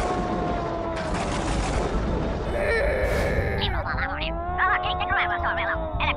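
Cartoon monster vocal effects: long growls that rise and fall slowly, over a dense rattling crackle, with quick wavering cries in the last second and a half.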